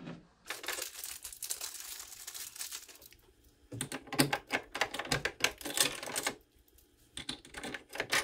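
Rapid clicking and rattling of a RotoPax LOX mount's locking handle being twisted and worked by hand: a scratchy rattle first, then after a short pause a dense run of sharp clicks, and a few more near the end. The lock is failing and will not work freely.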